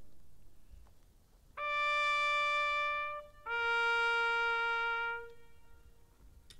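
A solo trumpet sounds a two-note call: two long held notes, each about a second and a half, the second lower than the first.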